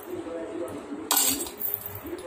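A metal spoon clinks once against a small stainless steel bowl about a second in, with a brief ring as it fades.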